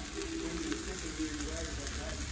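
Diced green peppers, tomatoes and chicken sizzling on an electric griddle, a steady hiss with light crackles.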